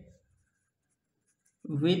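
A man's voice: the tail of one spoken word, a pause of about a second and a half in which nothing else can be heard, then the next word.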